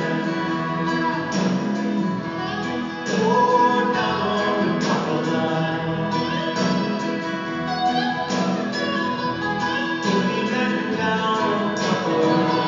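A live acoustic band playing in a large hall, with guitar and singing voices but no clear words, heard from the audience with the hall's reverberation.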